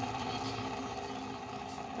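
Homemade Van de Graaff generator running, its small fan motor driving the rubber-band belt with a steady, even hum.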